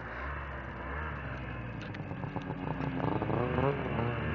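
Two-stroke snowmobile engine running while the sled rides over snow, its pitch rising and falling near the end.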